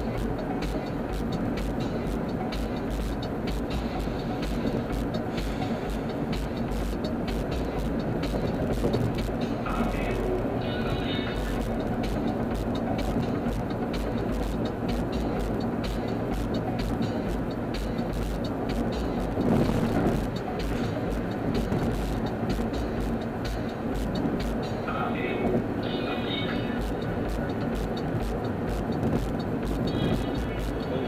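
Steady road and engine noise inside a car cruising on a freeway, with music playing underneath.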